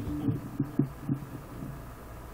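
Electric guitar in a short pause between phrases: a few soft, low notes in the first second, dying away to a quiet amplifier hum.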